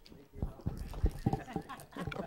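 A run of irregular soft, low thumps and knocks, about a dozen in under two seconds, with faint voices mixed in.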